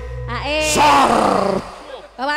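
A single voice gives a loud, rough, drawn-out shout over the band's music. It rises in pitch and then trails off about a second and a half in.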